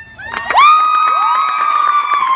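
Crowd of spectators cheering, with many sustained high-pitched screams, swelling in within the first half second after the marching band's music has ended.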